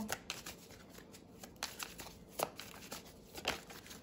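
A deck of oracle cards being shuffled by hand: a quiet run of irregular card flicks and slaps.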